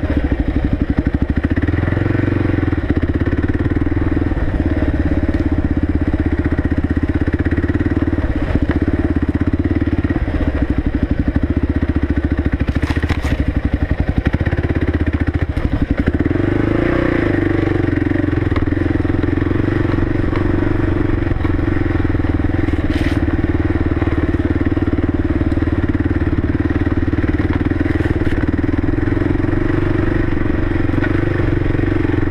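Kawasaki KLR650's single-cylinder four-stroke engine running steadily as the bike is ridden at trail pace, with the engine note changing about halfway through. A couple of brief sharp clicks are heard in between.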